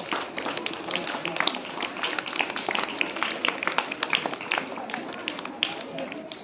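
An audience clapping, a quick uneven patter of individual claps.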